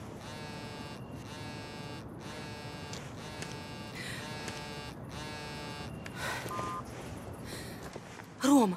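Smartphone vibrating with an incoming call, a steady electric buzz in long pulses with short breaks between them.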